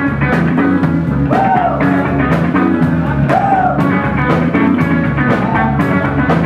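Live rock band playing: a drum kit keeps a steady beat with cymbal strikes under electric guitar, and a lead melody bends in pitch twice.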